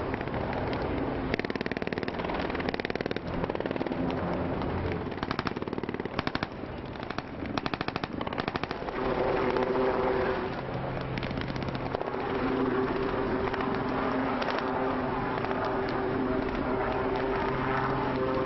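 Several bursts of rapid automatic gunfire in the first half, each a quick run of sharp shots. After that, an engine drones steadily under a continuous rushing noise: a landing craft's engine running on the water.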